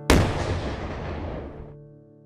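Single cannon shot: a sudden loud blast that rumbles away over about a second and a half, the Ramadan cannon being fired.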